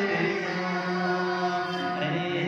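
A young man's voice singing a naat, a devotional praise poem, into a handheld microphone, holding one long drawn-out note with no words broken out.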